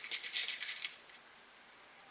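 Small metal straight pins clicking against each other and their container as one is picked out: a quick run of light, high clicks for about a second.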